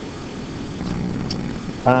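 Steady low background hum with no words, ending in a man's hesitant 'um'.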